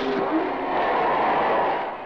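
Formula One racing car engines at speed: an engine note that slides down slightly near the start, then a steady rushing noise that eases off near the end.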